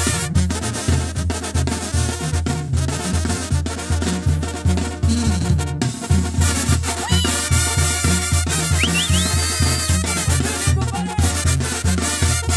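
Mexican banda brass band playing an instrumental passage: trombones and other brass over a tuba bass line pulsing steadily on the beat, with percussion.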